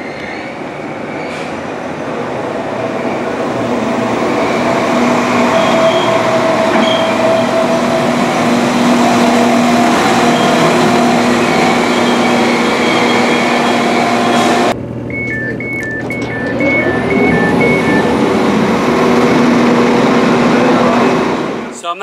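Northern Class 195 diesel multiple unit arriving at the platform: its engine and running noise grow louder over the first few seconds and then hold steady. After a cut about two-thirds of the way through, the train's door warning sounds as a rapid two-tone beeping, with engine noise rising and falling under it.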